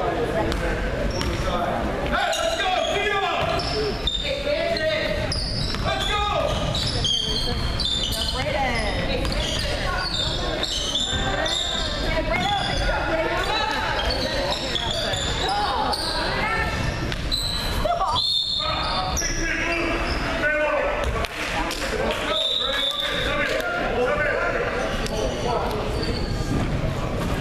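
Basketball game in a gym: a ball bouncing on the hardwood floor, sneakers squeaking, and voices calling out, all echoing in the large hall.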